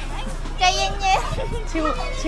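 Children's voices, high and excited, calling out with short exclamations.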